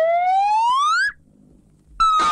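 Cartoon slide-whistle sound effect: one clean tone glides upward for about a second and cuts off sharply. After a short pause, a second whistle tone starts high at the very end and begins to slide down.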